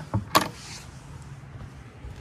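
A small click, then one sharp knock from a fibreglass deck hatch lid and its stainless flush pull latch being handled, followed by a faint steady low hum.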